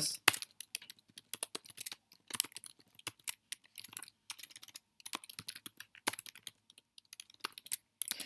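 Typing on a computer keyboard: quick, irregular key clicks in short runs, broken by a couple of brief pauses.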